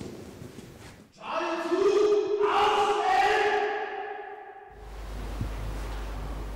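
A man's long, drawn-out shouted wake-up call, held on one pitch for about three seconds and starting about a second in. After it a steady low hum begins.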